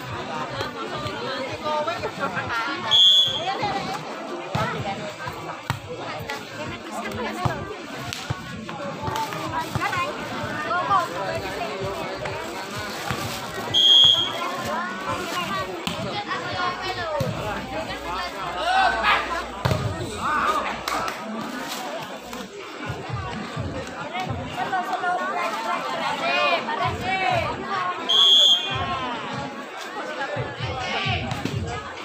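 A referee's whistle sounds three short, sharp blasts, about eleven to fourteen seconds apart, marking play in a volleyball match. A steady babble of spectators' voices runs underneath.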